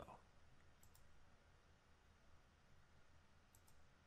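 Near silence with faint computer mouse clicks: one about a second in and another near the end, each a quick press and release of the button.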